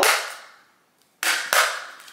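Two sharp snaps from a thin metal postcard in a plastic sleeve being handled, each fading over about half a second, with a moment of dead silence between them.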